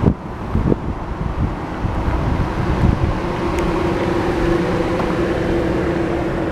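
Steady low rumble of motor vehicle noise, with a steady hum joining about three seconds in.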